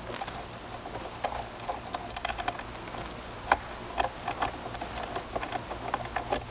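Scattered small clicks and taps of a sewing machine's presser foot and its fittings being handled while the foot is changed, with the sharpest click about three and a half seconds in.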